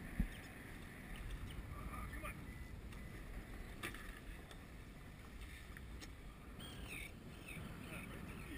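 Steady wind and water noise on a boat drifting on open water, with a single thump just after the start and a faint click about four seconds in.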